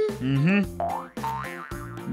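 Playful background music with cartoon-style sound effects: quick upward pitch slides, one about half a second in and a higher one about a second in.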